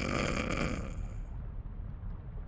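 A cartoon dodo character snoring: one rasping snore that stops about a second in.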